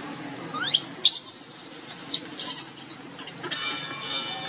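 Baby macaque crying in high-pitched shrieks, a short rising squeal under a second in, then a run of shrill screams for about two seconds. Near the end a steady droning sound with many even tones comes in.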